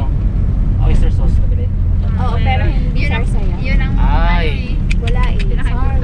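Low, steady engine and road rumble of a van heard from inside the cabin, with passengers' voices talking over it in short stretches.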